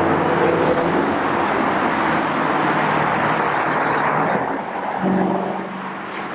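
Steady wash of road traffic from a multi-lane highway below, cars passing continuously.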